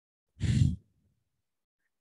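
A man's single short, audible breath out into the microphone, a brief sigh about half a second in, during a guided deep-breathing exercise.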